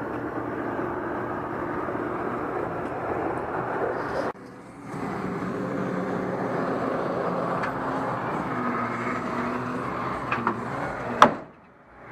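Tow truck's engine running steadily, with a short break just after four seconds. A single sharp click comes near the end.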